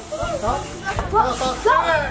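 Children's and teenagers' voices calling out and shouting in short, high-pitched cries.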